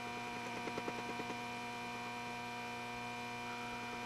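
Steady electrical hum made of several fixed tones, with a faint rapid ticking in the first second and a half.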